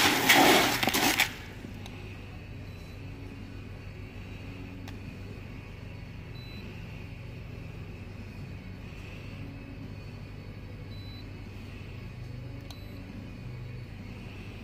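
About a second of loud rattling as dried soybeans are poured into a plastic pail. Then a steady, much quieter low machine hum for the rest.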